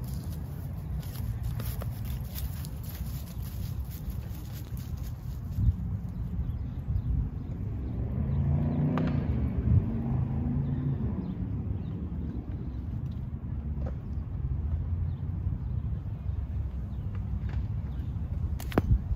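Steady low rumble of road traffic and outdoor wind, with a car passing by about halfway through, swelling and fading over a few seconds. There are a few faint clicks.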